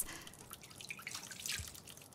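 Water dripping and trickling into a bathroom sink from a faucet, faint and irregular.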